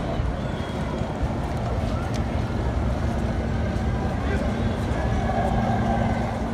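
Busy city street: steady traffic rumble mixed with the voices of passers-by, and a steady low hum that comes in about two seconds in.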